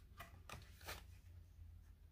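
Faint handling of a cardboard board book as a page is turned: a few soft clicks and rustles in the first second, otherwise near silence.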